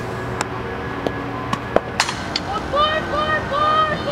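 A few sharp knocks, typical of softballs being hit or caught during fielding practice, the loudest about two seconds in. From about halfway through come drawn-out calls in a high voice.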